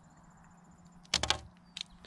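Solid-fuel tablet's foil blister wrapper crinkling and clicking as it is opened by hand: a short burst of sharp crackles about a second in, then a couple more clicks.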